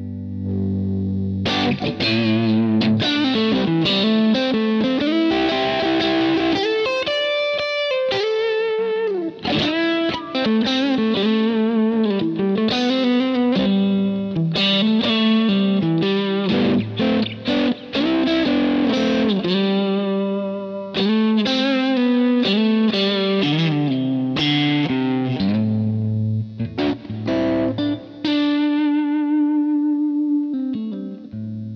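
Electric guitar with P-90 pickups played through a Kemper Profiler on a Two-Rock Ruby amp profile, a clone of the Trainwreck circuit: lightly overdriven melodic lead lines and chords, warm and punchy with a bright top. Several held notes are given vibrato, one near the end.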